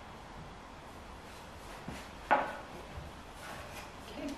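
A wooden tray being handled on the floor: one sharp wooden knock a little past halfway, with softer knocks and rubbing around it.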